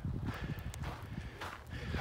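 Footsteps of a hiker wearing Yaktrax traction cleats on a dirt and ice road, about three steps in two seconds.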